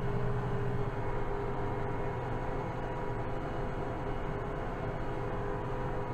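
Kubota M7060 tractor's four-cylinder diesel engine running steadily at working speed while spreading fertiliser, heard from inside the cab, with a constant hum and a few steady whining tones.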